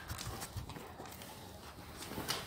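Faint scattered taps and scuffles of dogs' claws and paws on a tiled floor as they tussle.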